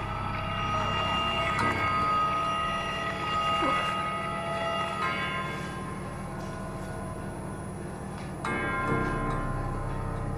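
Background score music: held bell-like tones ringing over a low steady drone, with a new swell entering about eight and a half seconds in.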